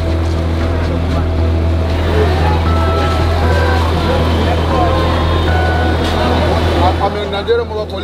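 Busy street din: background voices over motor-vehicle engine noise, with a steady low hum that drops out near the end.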